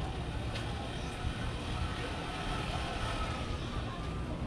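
City street ambience: a steady low rumble of distant traffic, with a few faint clicks.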